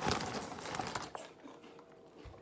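Close rustling and crinkling right at the microphone, loudest in the first second and then fading.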